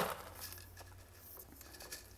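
Faint scattered clicks and rustles of expanded clay pebbles shifting in a net cup as a seedling is pressed into place by hand.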